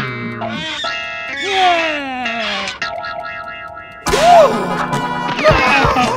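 Cartoon music score with comic sound effects: falling pitch glides in the first half, then a sudden louder burst about four seconds in with a rising and falling swoop and quick sharp hits near the end.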